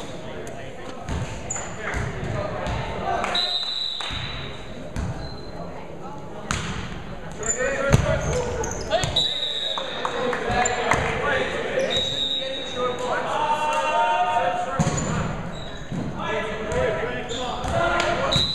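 Volleyball play in a large gym: the ball being struck and hitting the floor in sharp smacks, the loudest about eight seconds in, with sneakers squeaking on the hardwood court and players' voices calling.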